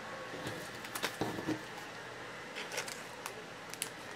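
Faint, scattered clicks and light rustling of a trading card being handled and set down on a tabletop.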